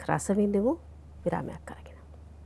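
A woman's voice speaking for under a second, then a pause broken by one short, softer sound of her voice, over a low steady hum.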